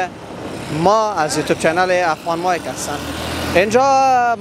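A man talking over street traffic, with a three-wheeled cargo motor rickshaw passing close by, its engine rumbling low under the voice near the end.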